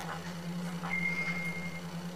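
Quiet background with a steady low hum and a few faint clicks; a thin, steady high tone sounds for about a second in the middle.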